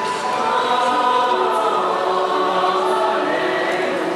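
A choir singing in long, sustained notes, several voices together, moving to new chords a few times.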